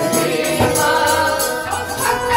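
Sikh kirtan: a harmonium played under a group of voices singing together in long, held notes.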